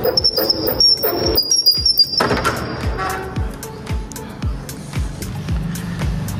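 Metal door hardware squealing and scraping for about the first two seconds, with clicks: a steel tower bolt is slid back and a grilled metal double door is opened. Background music plays throughout.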